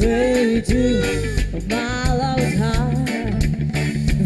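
Live band music: a woman singing held, bending notes over bass and guitar.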